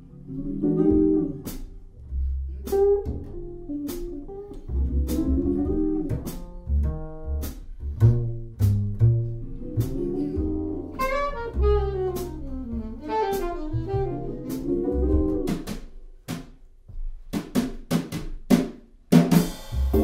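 Instrumental jazz: a melodic lead line over drum kit with rimshots and double bass.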